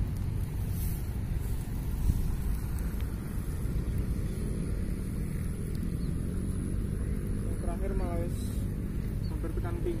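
A steady low rumble of outdoor background noise, with a faint voice near the end.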